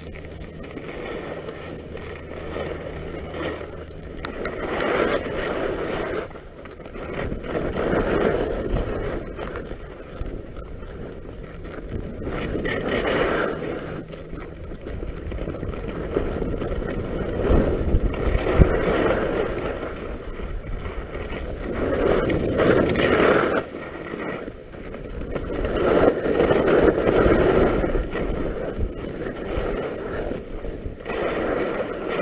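Skis scraping and hissing over packed, chopped-up snow on a downhill run, swelling with each turn every few seconds.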